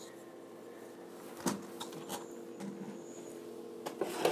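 Quiet handling noises over a faint steady hum: a few light knocks and clicks, the loudest about a second and a half in, as the plastic drone is handled and put down on a stone countertop.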